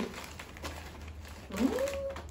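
Faint rustling and crunching of snacks, then near the end one drawn-out "hmm" from a person tasting, rising in pitch and then held.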